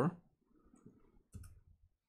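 A few faint keystrokes on a computer keyboard a little past halfway, as CSS code is typed.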